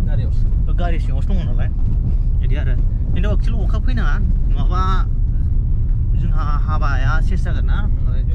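People talking over the steady low rumble of a moving car.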